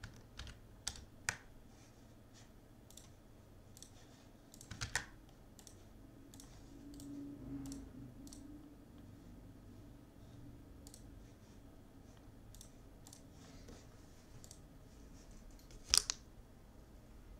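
Faint, scattered clicks of a computer keyboard being typed on now and then, with louder taps in the first second and about five seconds in, and a sharp click right at the end.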